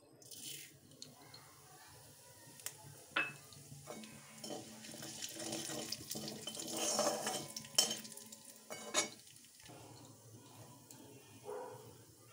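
Whole panch phoron spice seeds hitting hot oil in a kadai and sizzling, the hiss swelling as they fry. A metal spatula stirs and scrapes them against the pan, with a few sharp clinks.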